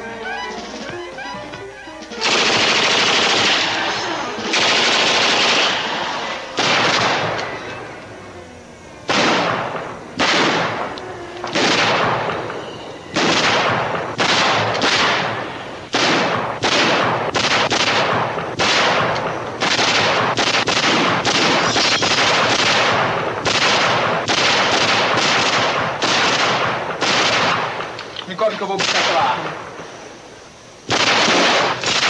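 Heavy gunfire: after about two seconds of music, two long volleys of shooting, then a steady run of loud shots and short bursts, about one to two a second, each trailing off with an echo. It thins out shortly before the end.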